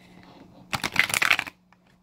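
Tarot cards being shuffled on a tabletop: a quick burst of rapid card flicks lasting under a second, about midway through.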